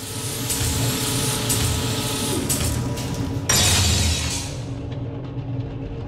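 Sci-fi transition sound effect: a low mechanical drone with steady hum tones under a wash of hiss, and a sudden loud burst of hiss about three and a half seconds in that fades away over a second.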